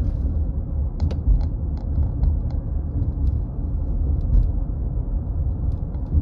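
Steady low rumble of a car driving along a paved road, with scattered faint ticks.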